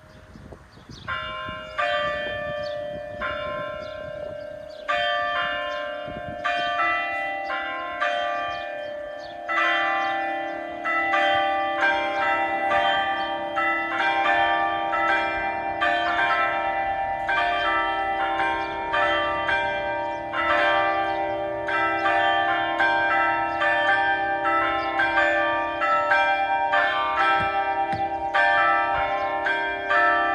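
The church's newly installed bells, started at the push of a button, ringing the celebratory peal meant for happy occasions such as weddings, Christmas and Easter. The strikes begin about a second in, sparse at first, then quicken as more bells join until the ringing overlaps continuously.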